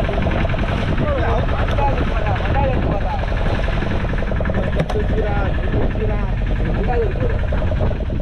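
A fishing boat's engine running steadily, with men's voices calling out over it at times.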